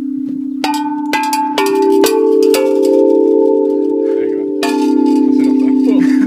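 Outdoor playground tubular chimes (tall metal tubes) struck with a mallet. A low note is already ringing, then five strikes about half a second apart in the first two and a half seconds and one more near the end, each adding a new pitch, with the notes ringing on and overlapping.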